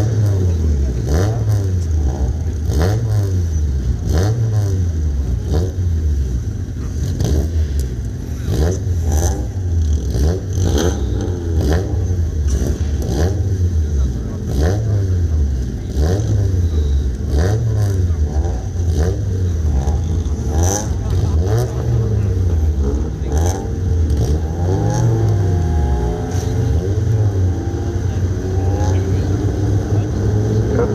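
Several folkrace cars racing around the track, their engines repeatedly revving up and dropping back as they accelerate and change gear, several engine notes overlapping.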